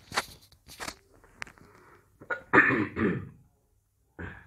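A man coughing and clearing his throat: a few short bursts in the first second, then a louder, longer cough about two and a half seconds in.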